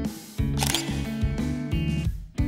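Background music that drops out briefly, then a camera-shutter sound effect about half a second in as the music comes back.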